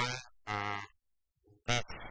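A person speaking over a microphone, with one drawn-out vowel about half a second in and a short pause just after the middle.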